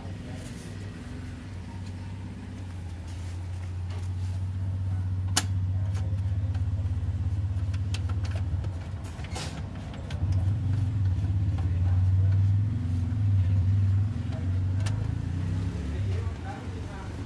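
Konica Minolta HQ9000 printing machine running, a steady low hum that builds and grows louder about ten seconds in, with a few sharp clicks.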